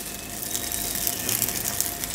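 Noodles and vegetables sizzling steadily in an oiled frying pan on the stove, with a few faint ticks and crackles.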